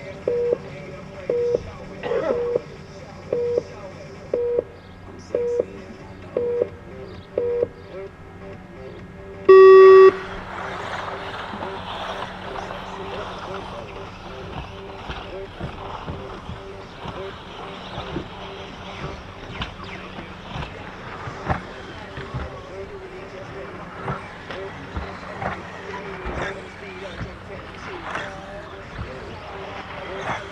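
Race timing system counting down with short beeps about once a second, then a longer, louder start tone about ten seconds in. Then a field of electric 2WD RC buggies runs on the track, a steady whir of motors and tyres with scattered clicks and knocks.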